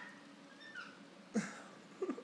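Baby's faint vocal sounds: a thin, high squeak just under a second in, then one short, louder grunt-like sound at about a second and a half.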